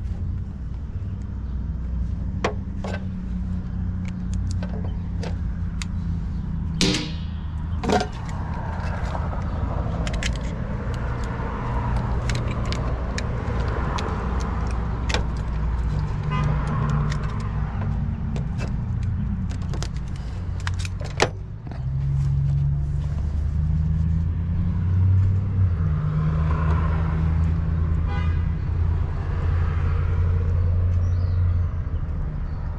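Intermittent metallic clicks and clinks of hand tools and pliers working wires into a breaker panel, with a few sharper clicks. Under them a steady low motor hum runs throughout and shifts in pitch partway through.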